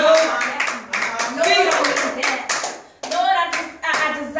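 Rhythmic hand clapping, about four claps a second, under a woman's excited preaching. The clapping stops briefly about three seconds in, then starts again.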